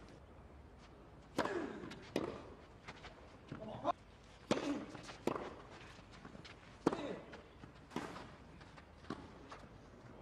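Tennis ball struck back and forth with rackets in a baseline rally on a clay court, about one sharp hit every second from about a second and a half in. Some hits come with a short grunt from a player.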